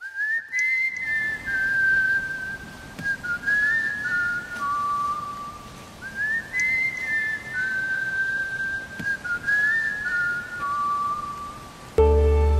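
A person whistling a short tune, one pure note at a time, stepping up and down; the same phrase comes twice, about six seconds each.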